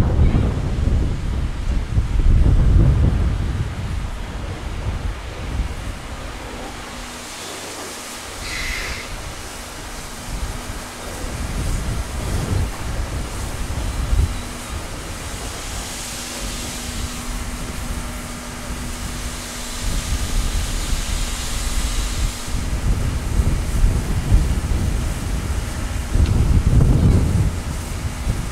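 JNR Class D51 steam locomotive rolling slowly into a station, with a long hiss of steam about halfway through and a steady low hum beneath. Gusts of wind rumble on the microphone, loudest at the start and near the end.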